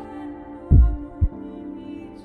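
Background score with a sustained held chord and a deep double thump like a heartbeat, two beats about half a second apart, partway through.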